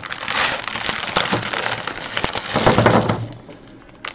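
Foil-wrapped candies poured out of a plastic bag onto a wooden table: a dense rustle of the bag and wrappers with the candies clattering down. It is loudest near the end of the pour and stops about three seconds in.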